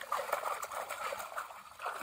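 Shallow muddy water sloshing and splashing as woven bamboo plunge baskets are pressed down and worked through it, a busy, continuous run of small splashes.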